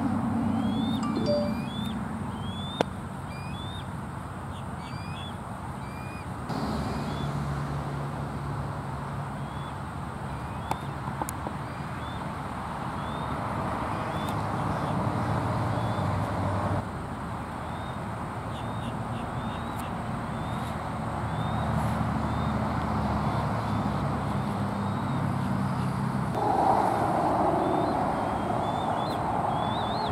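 Birds chirping: short, high, rising notes repeated throughout, over a steady low rumble that shifts level a few times.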